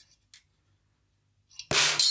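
A faint click, then near silence, then near the end a marble released from the Marble Machine X's hi-hat marble drop strikes the hi-hat cymbal with one sharp metallic hit that rings on.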